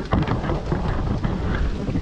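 Loud rumbling handling and wind noise on a phone's microphone as it moves through palm fronds, with crackling and rustling of leaves.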